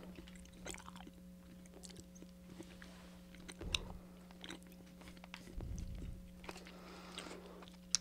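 Faint chewing of Hi-Chew fruit taffy close to a microphone, with scattered small clicks and soft wrapper handling, over a steady low hum.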